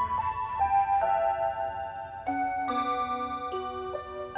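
Seiko Wave Symphony musical wall clock playing its built-in electronic melody: a simple tune of clear, held notes, changing about twice a second.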